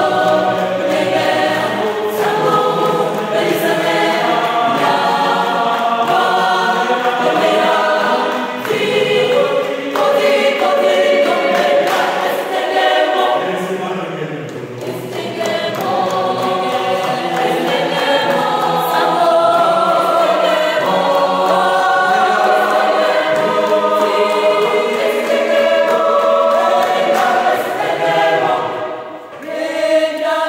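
Mixed choir of men and women singing a cappella in harmony, with a short break near the end.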